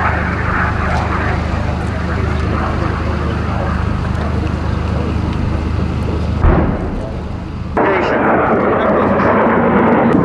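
Steady low drone with a single sharp blast about six and a half seconds in: an anti-tank missile exploding on a target vehicle. After a sudden cut, the rushing noise of an F-16 jet fighter flying overhead.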